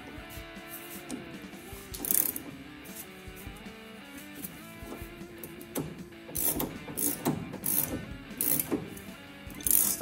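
Ratchet wrench clicking in short strokes as it turns the forcing screw of a Pitman arm puller, over steady background music.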